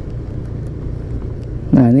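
Motorcycle riding slowly, a steady low rumble of engine, road and wind noise. A man's voice starts near the end.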